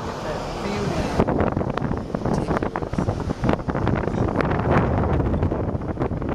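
Wind buffeting the microphone at an open car window while driving, in irregular gusts over the rumble of the moving car.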